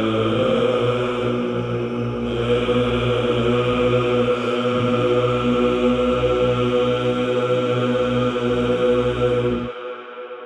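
Byzantine (psaltic) chant sung in Romanian in the fifth tone: a held melodic line over a steady low drone. Near the end the lower part cuts off and the sound falls away.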